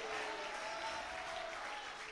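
Faint applause and murmur from a church congregation, steady and low.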